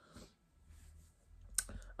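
Quiet room with a faint breath-like hiss, then one short, sharp click about one and a half seconds in.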